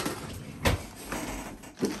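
A plastic-bagged RC truck being slid out of its cardboard box: rustling and scraping of plastic and cardboard, with a sharp knock about two-thirds of a second in and another thump near the end.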